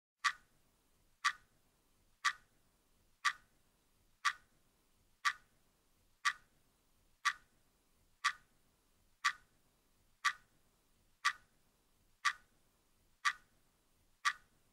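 A clock ticking steadily, one sharp tick each second, with near silence between ticks.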